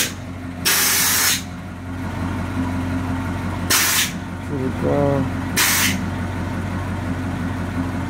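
Air suspension on a 1959 Ford Galaxie being dumped to lower the car: three hisses of air let out of the airbags, a longer one of under a second about a second in, then two short ones, as the body drops toward the ground. A steady low hum runs underneath.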